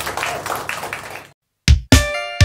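Small audience applauding, a dense patter of hand claps that cuts off abruptly after about a second and a half. Near the end, a band comes in with loud accented hits.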